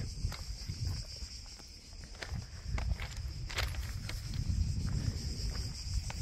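Outdoor ambience on a hot hillside: a steady high drone of insects chirring, wind rumbling on the microphone, and a few light footsteps.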